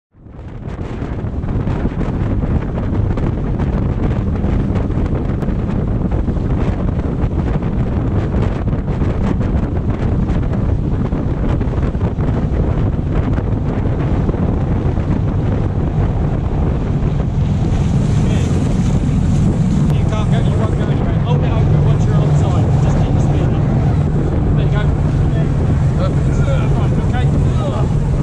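Rigid inflatable boat running at speed: a steady engine drone under heavy wind buffeting on the microphone and rushing water. The sound fades in at the start, and the engine drone grows louder about two-thirds of the way through.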